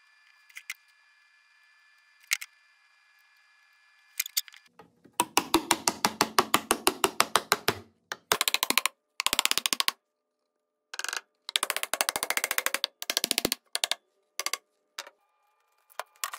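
Small wooden-handled hammer tapping plywood panels together at their glued finger joints, seating the box joints. A few light clicks come first, then fast runs of sharp taps, about ten a second, broken by short abrupt gaps.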